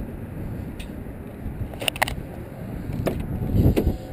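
Driver's door of a 2004 Ford Mustang GT being opened: sharp clicks of the door handle and latch, a close double click about two seconds in, and a dull thump near the end, over low outdoor noise.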